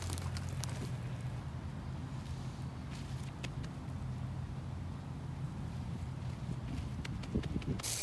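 Gloved hands working garden soil while sowing seeds: faint scattered rubs and ticks over a steady low hum.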